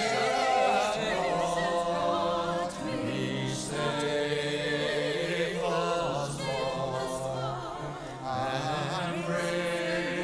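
Church choir singing a sacred piece, several voices with vibrato in sustained phrases, with brief breaks between phrases.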